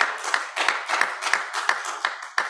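Steady rhythmic hand clapping, about three claps a second.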